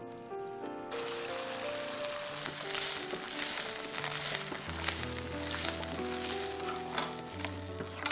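Cauliflower florets sizzling as they fry in oil in a wok, stirred with a silicone spatula; the sizzle comes in about a second in and carries on with many small crackles, over background music.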